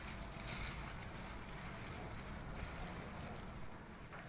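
Faint, steady background noise: a low rumble under an even hiss, with no distinct event standing out.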